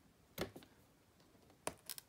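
Three faint clicks from a jewel-topped thumbtack being pushed through a paper note into a foam-covered memo board: one early, then two close together near the end.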